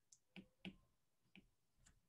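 Near silence with about four faint, short clicks spread across the two seconds.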